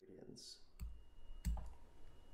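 Faint pen-tablet stylus noise as writing begins on screen: two sharp clicks, about a second and a second and a half in, each with a soft low tap.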